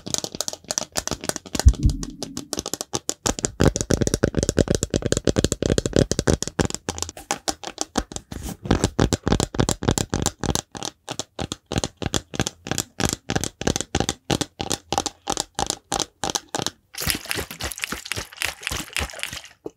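Fingers tapping rapidly on a plastic shaker bottle, a fast, even patter of light taps. For a few seconds in the first half the taps sound fuller and deeper.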